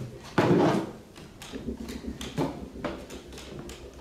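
Knocks, creaks and scrapes from wooden chairs and long poles on a wooden stage floor as a group of seated people mime rowing. The loudest knock comes about half a second in, with smaller irregular knocks after it.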